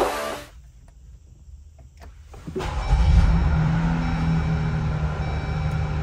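Music cuts off near the start. About two and a half seconds in, a Jeep's engine starts and then idles with a steady low hum.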